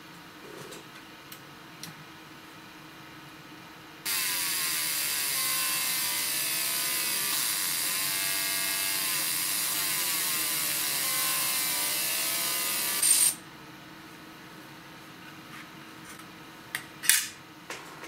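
Pulsed fiber laser (20-watt MOPA) marking aluminium: a loud, even hiss from the beam striking the metal starts abruptly about four seconds in and cuts off sharply about nine seconds later. A steady low hum runs underneath, and a few small clicks come near the end.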